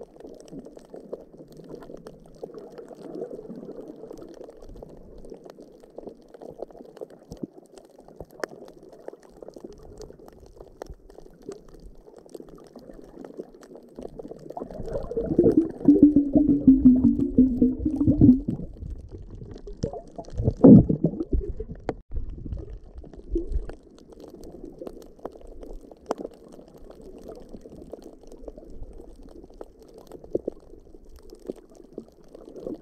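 Muffled water noise picked up by a camera held underwater, a steady low sloshing throughout. It grows much louder for about three seconds around the middle, with a wavering hum-like tone in it, and there is one more short loud swell a few seconds later.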